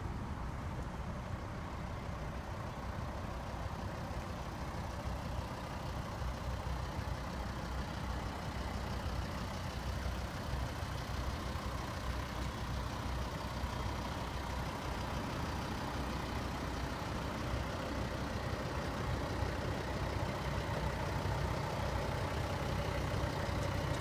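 Volvo V60 D5 2.4-litre five-cylinder turbodiesel idling steadily, a low hum that grows a little louder toward the end.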